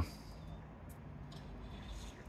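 Faint steady background noise with a low hum, in a gap between spoken words.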